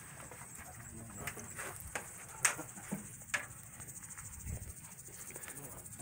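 Faint outdoor field ambience with a steady high-pitched insect drone, and a few sharp clicks: the loudest comes about two and a half seconds in, another shortly after three seconds.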